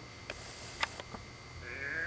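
A few sharp clicks, the loudest just under a second in, then a sheep bleats with a quavering call near the end.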